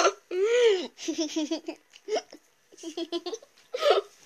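People laughing: a drawn-out rise-and-fall laugh, then runs of quick repeated laugh pulses, with a second run near the end.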